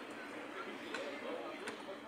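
Faint, distant voices with a few light clicks.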